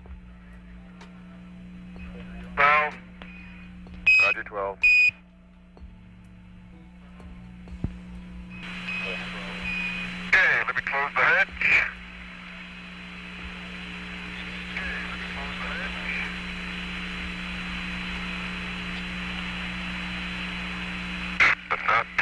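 Apollo 14 air-to-ground radio link: a few brief bursts of distorted radio voice, short high Quindar beeps keying transmissions on and off, and a steady low hum. From about eight seconds in, the hiss of an open radio channel comes up and stays.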